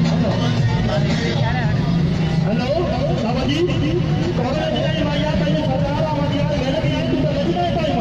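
Music playing loudly with voices over it, against the sound of vehicle engines running in slow traffic.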